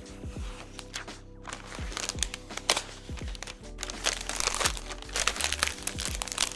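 Thin plastic protective film being peeled off the back of an iMac and crumpled by hand, crinkling and crackling, thicker in the second half. Background music plays underneath.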